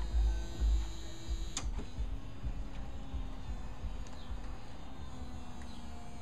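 2010 Corvette convertible's power top mechanism running as the top folds away: a steady low motor hum, with a sharp click about one and a half seconds in. Wind rumbles on the microphone throughout.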